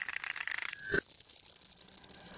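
Cartoon sound effect: a fast, even rattle, with a short thump about a second in.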